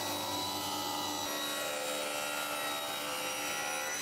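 Sliding-table circular saw running at a steady pitch with a constant whine while crosscutting a plank clamped to its carriage.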